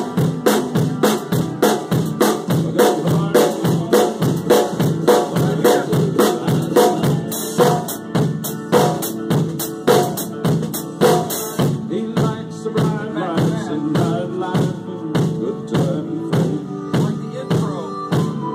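Drum kit played in a steady groove, bass drum and snare under a running hi-hat, over the recorded country song with its band. About twelve seconds in, the hi-hat stops and the drumming thins out.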